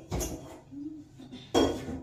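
Two sudden knocks with a clattering ring, one right at the start and one about a second and a half later.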